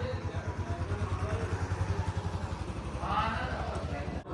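An engine idling steadily with a low, rapid pulse, with faint voices in the background.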